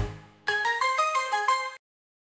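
Short intro jingle: as the tail of a deep hit fades, a quick run of about eight pitched notes plays and then cuts off suddenly.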